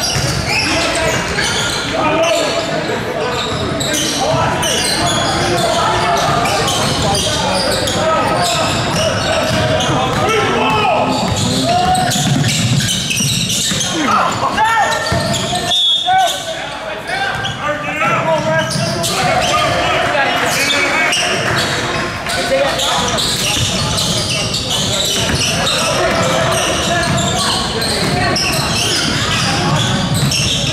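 Basketball game in a gym: a ball bouncing on the hardwood court amid overlapping shouts and chatter from players and spectators, echoing in the large hall.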